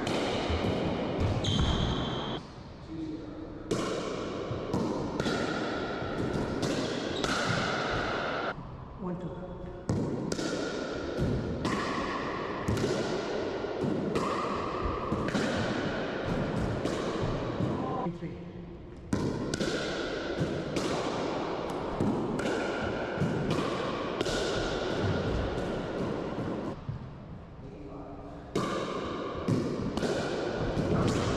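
Pickleball play in an enclosed racquetball court: paddles striking the plastic ball and the ball bouncing off floor and walls, each hit echoing, with sneakers squeaking on the court floor in between.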